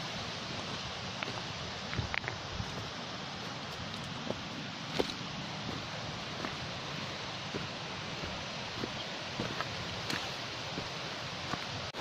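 Footsteps on a stony trail, scattered irregular knocks and scrapes, over a steady outdoor hiss of wind and foliage.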